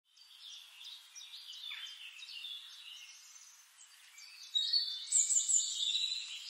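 Birds singing: a busy mix of high chirps and warbling calls, louder from about halfway through, with a high, thin held note near the end.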